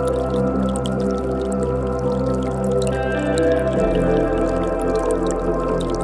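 Ambient music of sustained, steady chords, the lower notes shifting about four seconds in, over a faint trickle and drip of creek water.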